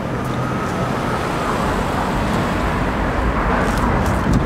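Steady traffic rumble and road noise, with a thin high whine over the first second and a half.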